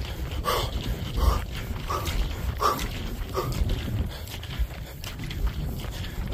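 A man panting hard while running up a steep mountain slope, a breath about every half second to second, over a constant low rumble on the phone microphone.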